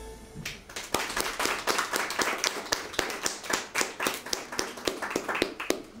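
Sparse audience applause of separate hand claps, starting just after the last note of the music fades and stopping abruptly near the end.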